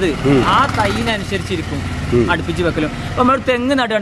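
A man speaking, with a low steady rumble underneath.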